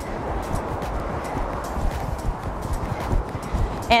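Steady wash of ocean surf with a quick, even tapping rhythm over it.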